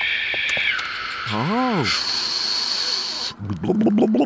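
Electric kettle coming to the boil, a steady high steam hiss that drops in pitch about a second in, rises higher at two seconds and stops a little after three seconds. A short rising-and-falling hummed 'hm?' comes in the middle.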